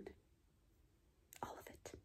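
Near silence, then a brief soft breathy sound from a woman about a second and a half in, like a whisper or a breath before she speaks again.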